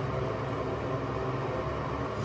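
Steady low hum with an even hiss: background room noise from something running, with no distinct events.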